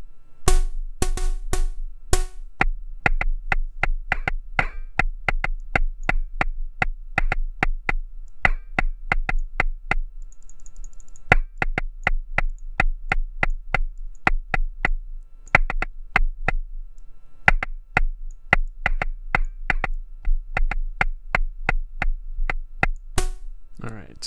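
Axoloti Core drum-synth patch played from pads: a busy run of short electronic percussion hits, about four a second, each a little different in pitch and tone as a random LFO and the playing velocity modulate it. A steady low tone runs underneath, and there is a brief pause about ten seconds in.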